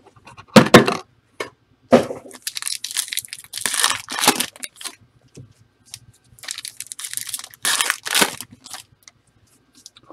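Foil trading-card pack wrappers crinkling and tearing as the packs are handled and ripped open. The sound comes in several loud, ragged bursts with short quiet gaps between them.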